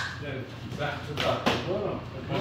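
Quiet men's voices with a single sharp slap about a second and a half in, a hand striking a back during a greeting hug.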